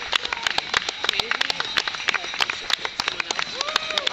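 Roadside spectators clapping rapidly and unevenly as runners pass, with scattered wordless cheering voices mixed in.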